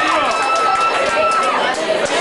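Club audience cheering, shouting and clapping between songs. A long, steady high whistle runs through it and stops about three-quarters of the way through.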